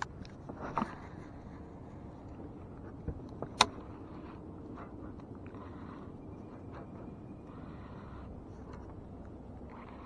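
Baitcasting fishing reel and rod being handled during a cast: a few short sharp clicks, the loudest about three and a half seconds in, over a faint steady low rush.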